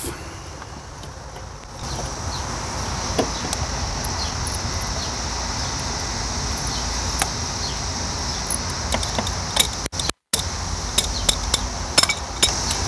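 Hand tools and small metal parts clinking lightly now and then while the shift cable linkage is worked loose, over a steady background hiss and low rumble.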